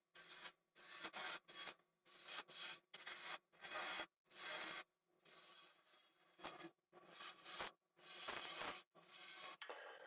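A small lathe tool taking light, repeated cuts on a spinning African blackwood finial: short scraping bursts, about two a second, with brief silent gaps between them.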